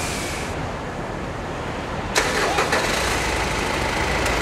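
Mitsubishi 4M41 3.2-litre turbodiesel in a Pajero Dakar starting up about two seconds in, catching at once and running on at idle.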